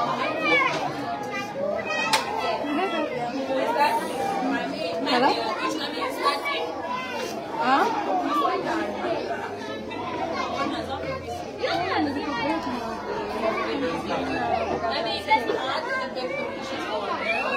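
A crowd of young children chattering and calling out at once, a continuous babble of small overlapping voices.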